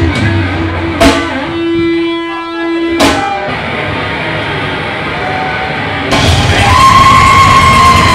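Live rock band with electric guitar and drum kit, playing loud. Two sharp accented hits come about two seconds apart with a held guitar note ringing between them, then a quieter stretch of guitar. The full band comes back in loud about six seconds in.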